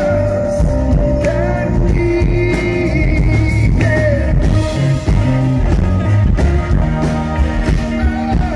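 A live band with a male lead singer, heard from the audience: sustained sung lines over electric guitar, keyboards and a steady beat.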